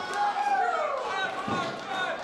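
Voices draw out a long 'ooh' that falls in pitch, reacting to a hard hit in a wrestling ring. A single thud comes about one and a half seconds in.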